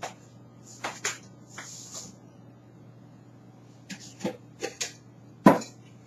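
Scattered knocks and clicks of kitchenware being handled, the loudest a sharp knock about five and a half seconds in, over a faint steady hum.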